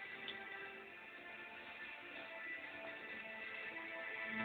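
Faint background music from a television programme, soft held notes with no beat.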